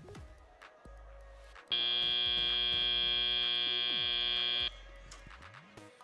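Robotics competition field's end-of-match buzzer sounding as the match clock hits zero. It is one loud, steady tone lasting about three seconds, starting about two seconds in and cutting off suddenly.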